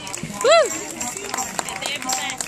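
A single loud whooping yell from a person's voice about half a second in, rising then falling in pitch, with fainter voices around it.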